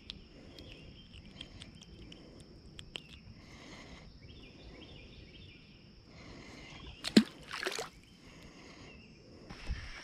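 A sharp knock and then a short splash about seven seconds in, as a black crappie is dropped back into the pond, over light handling clicks and a faint steady high whine.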